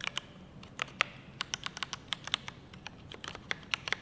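Typing on a Mountain Everest Max mechanical keyboard with Cherry MX Red linear switches: rapid, irregular clacks of keys being pressed and bottoming out.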